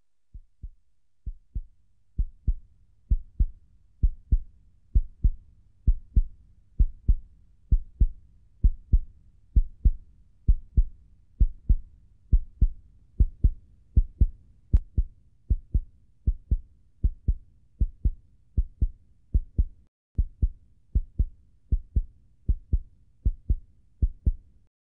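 A slow heartbeat, a low double thump about once a second. It fades in over the first two seconds and keeps a steady pace, with a short break near the end.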